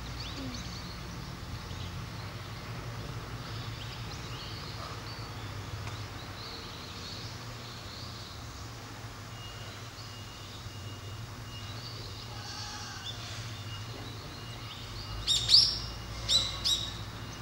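Birds chirping in the background over a low steady hum, then several loud, sharp bird calls in quick succession near the end.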